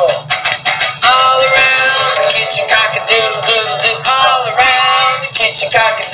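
Music: a song with a voice holding long sung notes over a steady beat.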